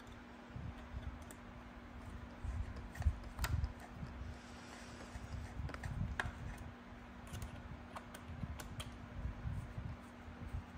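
Screwdriver tip and fingers pushing wiring into the aluminium wire channel of an e-bike battery tray: faint scattered clicks and scrapes with soft handling knocks, the sharpest half-dozen clicks falling in the middle of the stretch.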